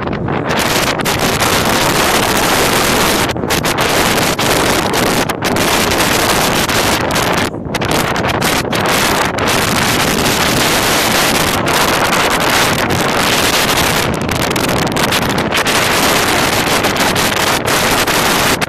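Wind buffeting the microphone: a loud, steady rushing roar that drowns out everything else, dipping briefly a few times.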